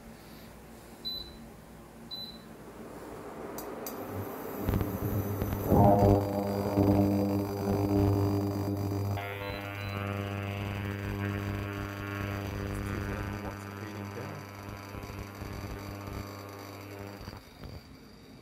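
Portable induction cooktop's touch controls beeping twice, then the hob running under a copper-base pan of water with a steady electrical hum that swells and gains higher overtones as the power is turned up to 2000 W, cutting off shortly before the end.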